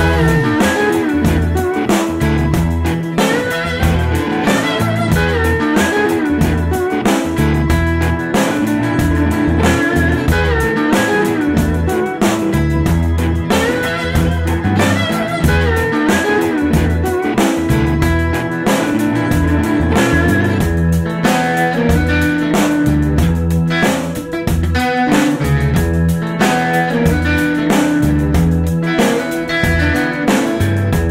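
Blues-rock band playing an instrumental break: a guitar lead with bending notes over bass and a steady drum beat.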